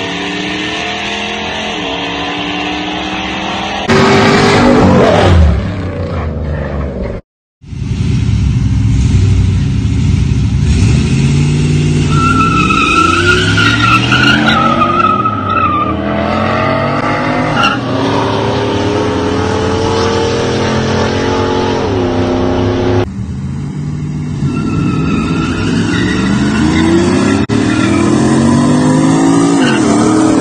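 Modified mini pickup trucks' engines revving and accelerating hard through the gears on street drag launches, with tyres squealing from wheelspin. The sound changes abruptly several times, with a brief dropout about seven seconds in.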